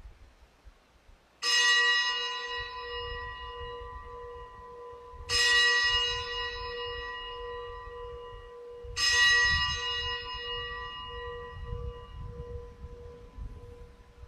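A bell struck three times, about four seconds apart, each strike ringing on with a long, pulsing hum. This is the consecration bell rung at the elevation of the host during Mass.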